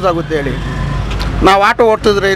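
A man talking close to the microphone, with a low rumble of road traffic underneath. The rumble stands out during a pause of about a second in the middle.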